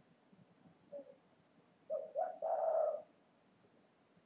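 Spotted dove cooing: one short soft note about a second in, then a quick phrase of two short notes running into a longer final note.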